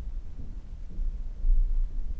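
A low rumble with no words, swelling to its loudest about one and a half seconds in.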